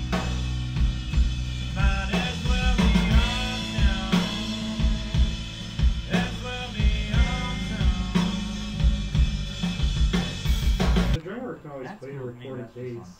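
Full-band rock music at a loud level: a drum kit with snare and kick, bass and electric guitar. It cuts off abruptly near the end, and a man's voice begins.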